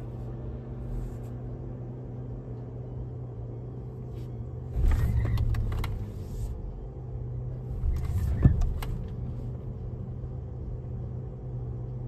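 Inside the cabin of a Tesla Model S electric car rolling slowly, a steady low hum. Two louder rushes of vehicle noise come from outside, about five seconds in and again around eight seconds.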